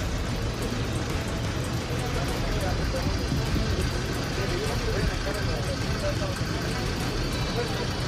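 Steady low rumble of idling vehicles on a street, with indistinct voices of a crowd of people talking.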